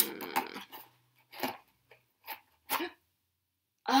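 Three short rustles of a cut-out being handled and drawn out of a white cardboard box, spread between about one and three seconds in.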